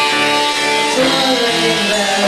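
Live rock band music with guitar prominent, a steady run of held pitched notes changing about every half second.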